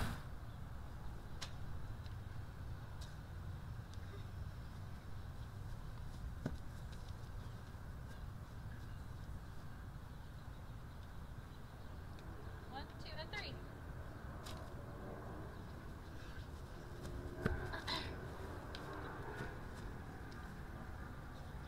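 Quiet outdoor ambience with a steady low rumble, a few faint clicks, and faint distant voices about two-thirds of the way in and again near the end.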